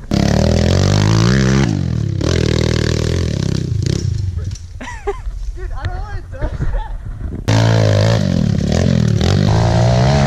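Small single-cylinder pit bike engines running close by, idling and blipping the throttle, loud. The sound changes abruptly about two seconds in and again about seven and a half seconds in, with a quieter stretch in the middle where voices are heard over the engines.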